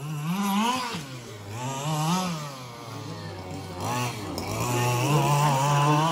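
FG Marder RC buggy's 25 cc two-stroke petrol engine running under throttle. Its note rises and falls several times as the throttle is worked, dips lower around the middle and holds higher near the end.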